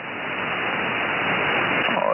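Shortwave receiver hiss: 20-metre band noise from a RadioBerry 2 software-defined radio in upper-sideband mode, with no station talking in the passband. It is an even static, with nothing above the receive filter's top edge of about 3 kHz, and it swells slightly in level.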